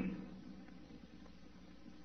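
A pause between a speaker's phrases on an old recording: only a faint steady hiss with a low hum. A man's voice trails off at the very start.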